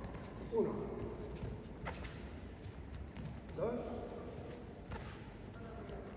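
Bare feet stepping and shuffling on judo tatami mats during a counted kouchi gari footwork drill, with one sharp knock about two seconds in.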